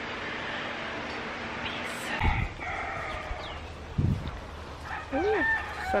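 A rooster crowing, one drawn-out call starting about two seconds in, with a couple of low thumps on the microphone.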